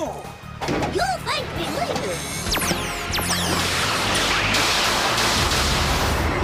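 Television sci-fi sound effects: warbling electronic chirps and several steeply falling whistles, then a rushing noise about halfway in, with a low rumble and background music. This is the effect that marks the monster growing to giant size.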